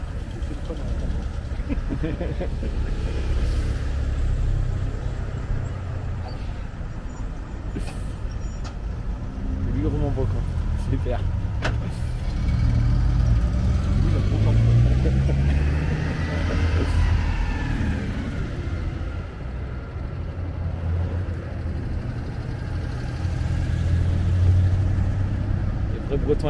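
Road traffic passing close, classic cars and vans among it, with engines running steadily at low speed. About halfway through, one engine note rises and falls as a vehicle goes by.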